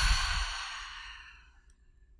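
A woman's deliberate, full exhale through the mouth: a breathy sigh that fades out over about a second and a half.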